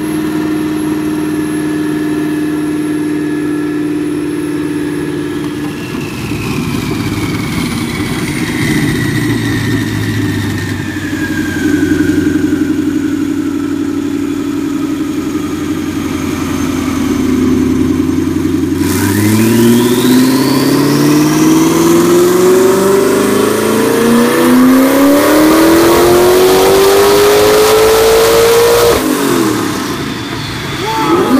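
Twin-turbocharged 5.4-litre V8 of a Ford GT running on a chassis dyno. For the first part it holds steady revs while a high whine falls in pitch. About two-thirds of the way in it goes into one long pull, the engine note and the turbo whine climbing steadily together with a rush of air for about ten seconds, and it cuts off sharply near the end.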